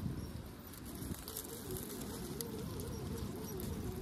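RC rock crawler's brushless motor whining as it climbs, the pitch wavering up and down with the throttle, with small crunches and clicks of the tires on dirt and rocks.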